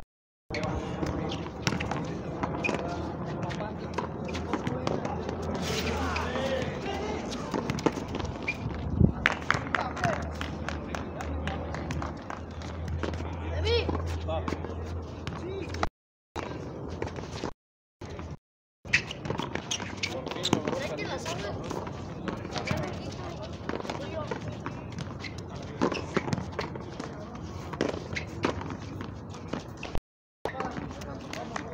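Frontón ball play: sharp smacks of a ball struck by hand and hitting the concrete wall and court, over indistinct voices of players and onlookers. The sound cuts out briefly twice past the middle.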